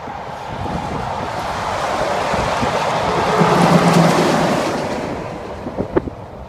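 Highway traffic passing close by: a semi truck and cars drive past, their tyre and engine noise swelling to a peak about four seconds in and then fading. Wind on the microphone, and a sharp knock near the end.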